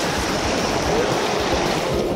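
Fast stream water rushing over rocks in a riffle, a loud, steady sound.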